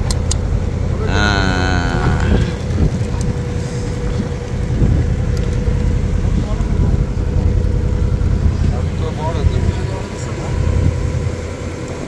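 Fishing trawler's engine running steadily under way, a heavy low drone with a constant higher hum over it. A brief voice sounds about a second in.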